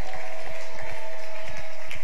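A congregation clapping hands together in a dense, irregular crowd clap, with a steady held tone sounding under it until near the end.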